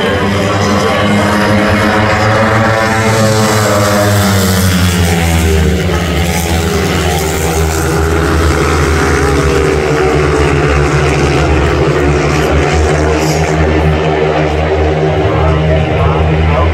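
Several long-track racing motorcycles with 500 cc single-cylinder engines at full throttle during a race. The engines run loud and continuously, and their pitch sweeps up and back down a few seconds in.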